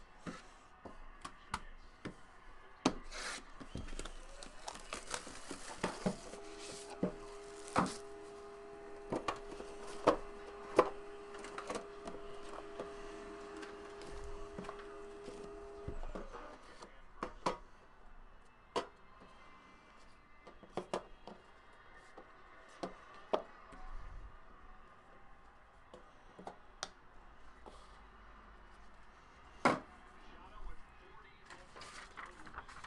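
A sealed box of trading cards being unwrapped and opened by hand: rubbing and tearing of the wrapper, then knocks, taps and scrapes of cardboard and a metal tin lid. A steady tone runs for about ten seconds in the middle.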